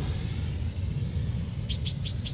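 Parrot AR.Drone quadcopter's motors whining faintly and steadily at a distance, under a low rumble of wind on the microphone. Several short high chirps come near the end.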